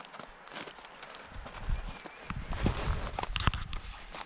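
Snow crunching with scattered clicks and rustles as slip-on rubber traction spikes are stretched over running shoes. The handling is busiest in the second half.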